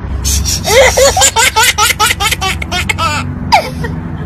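Baby laughing in a quick run of high-pitched giggles, several a second, for about three seconds, then one falling squeal near the end, over a steady low hum.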